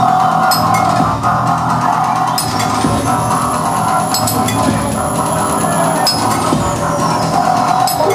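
Live industrial electronic music: a dense, steady droning wall of keyboard sound with sharp metallic hits every second or two from a frame of hanging metal percussion.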